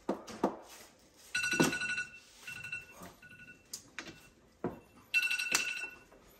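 An electronic ringing tone sounds in pulses: a long ring, two short ones, then another long ring near the end. Sharp clacks of mahjong tiles on the table come in between.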